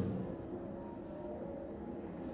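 Low, steady ambient drone with faint held tones, part of a video artwork's soundtrack.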